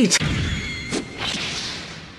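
Sound effects from a tokusatsu fight: a sharp whip-like hit with a short ringing tail, a second hit about a second in, then a fading swoosh.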